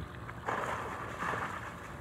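A child belly-sliding along a wet plastic slip 'n slide: a swishing rush of water and plastic that starts about half a second in and comes in two swells.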